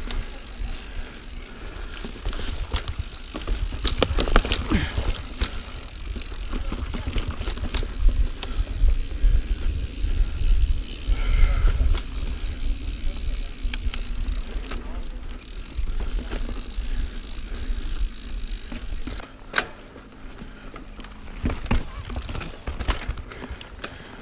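Mountain bike riding over dirt singletrack, recorded on a helmet camera: a steady rumble of wind on the microphone and tyres rolling on dirt, with scattered knocks and rattles as the bike goes over bumps. It gets somewhat quieter near the end.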